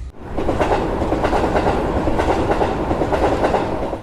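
Train rolling along the track: a steady rumble with a dense clatter of wheels on rail, starting suddenly a moment in.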